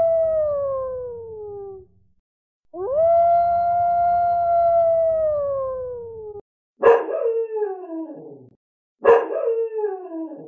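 Recorded dog howls played from a dog-sounds app: one howl trailing off and falling in pitch over the first two seconds, then a second long howl held steady before sliding down and cutting off abruptly. Two shorter howls follow, each starting sharply and sliding down in pitch.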